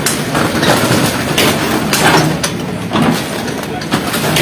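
A JCB backhoe tearing down a stall: the digger's engine running under repeated crashing and scraping of corrugated sheet metal and timber as the structure collapses, with people's voices in the background.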